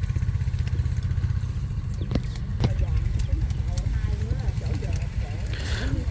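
A small engine running steadily at idle, a low pulsing rumble, with faint voices in the background.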